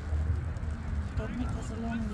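Wind rumbling on the microphone, with faint distant voices of players and spectators across the field and one nearby spoken word near the end.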